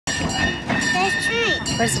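Small open-car ride-on train running along its track: a steady rumble with a thin, steady high tone for about a second, under voices.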